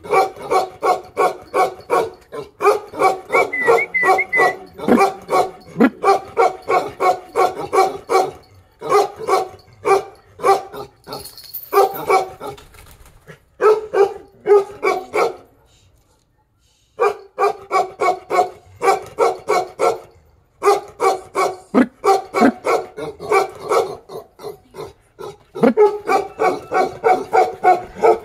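A large dog barking in fast, steady runs of deep barks, about four a second, broken by short pauses and one longer break about two-thirds of the way through.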